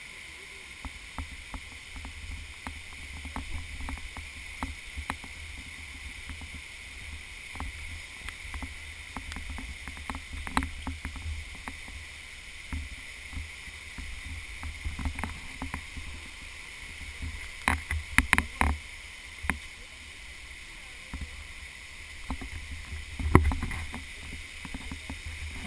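Steady rush of a rocky stream cascading nearby, under low rumbling from a handheld camera and scattered footsteps and knocks on the trail. A cluster of louder knocks comes about 18 seconds in, and another near the end.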